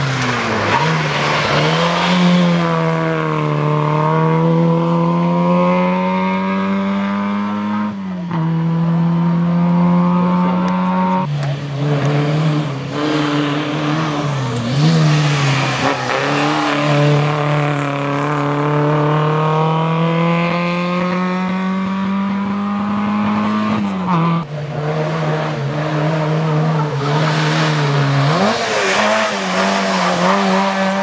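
Small four-cylinder historic rally cars, Autobianchi A112s, driven hard through hairpin bends. The engine note climbs steadily under acceleration for several seconds at a time and drops abruptly several times as the driver lifts off or changes gear.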